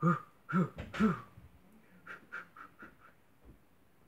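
A man's voice making three short "whoo" sounds in the first second or so, each rising and falling in pitch, followed by a few fainter short vocal sounds.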